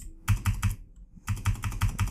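Computer keyboard typing close to the microphone: a run of keystrokes, a short pause about a second in, then a faster run of keystrokes.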